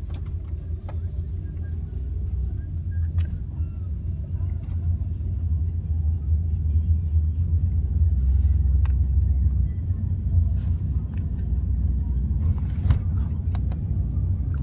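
Low road and engine rumble inside a moving car's cabin, growing louder over the first half as the car picks up speed, with a few faint clicks.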